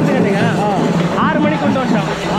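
People talking close by, over a steady background hum.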